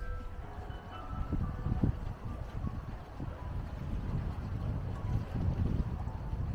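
Wind buffeting the microphone outdoors: a steady low rumble that swells in gusts, loudest about two seconds in and again near the end.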